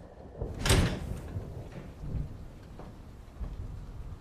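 A sudden loud bang about a second in, followed by a couple of softer low thumps.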